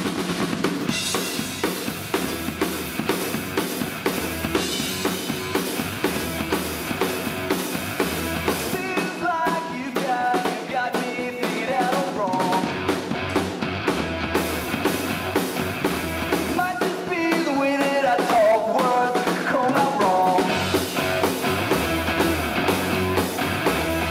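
A rock beat played on a full drum kit, with bass drum and snare, along with a backing track that has a steady bass line. Melodic parts come in over it from about nine seconds in.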